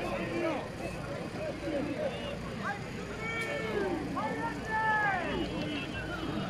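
Spectator crowd voices: several people talking and calling out at a distance, with no voice close to the microphone, over a low steady hum.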